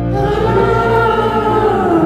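Wordless, choir-like voices hold one long note that rises slightly and then slides down near the end, over a sustained low keyboard drone in a slow ambient song.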